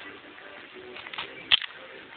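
A plastic action figure being handled: faint rubbing and a few light clicks, then one sharp knock about one and a half seconds in.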